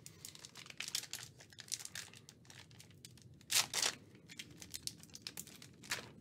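Foil wrapper of a trading-card pack (a 2022 Multi-Sport Vault pack) crinkling as it is handled, in short crackles, with a louder burst of crinkling about three and a half seconds in.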